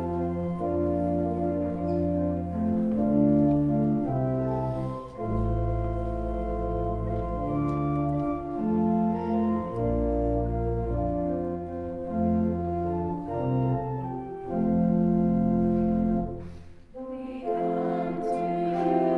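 Church organ playing a hymn introduction in slow, held chords over a sustained bass line. The organ pauses briefly near the end, and the small choir begins singing the hymn.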